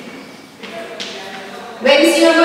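Chalk scratching on a blackboard in a couple of short strokes as a word is written.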